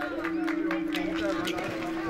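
Background voices of an outdoor crowd, with one steady held tone and scattered light clicks.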